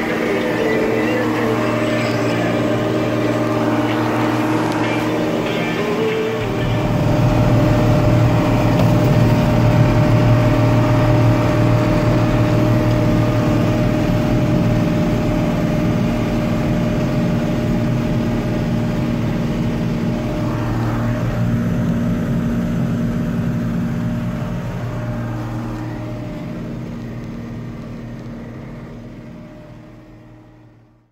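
Tractor engine running steadily, heard from inside the cab. It gets louder about six seconds in and fades out near the end.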